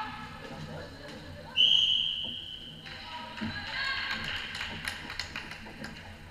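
Floorball referee's whistle blown once, a single steady blast of about a second. It is followed by a run of sharp clicks from sticks striking the plastic ball, with players calling out in the background.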